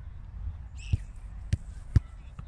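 A football being kicked: three short thumps about half a second apart, the last and loudest the strike of a ball at the very end. A steady low wind rumble on the microphone runs underneath, with a brief high-pitched sound just before the first thump.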